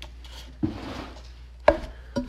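Two knocks about a second apart, the second the louder, with a short rustle after the first: handling noise from the recording phone as a hand touches and moves it on the table.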